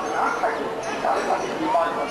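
People's voices with short rising cries over a busy background.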